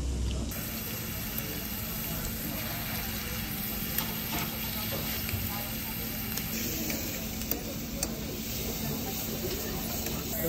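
Thinly sliced beef sizzling in a cast-iron pan, an even frying hiss with a few sharp crackles, over a steady low hum of the room.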